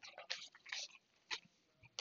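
Near quiet room tone, broken by a few faint, short clicks.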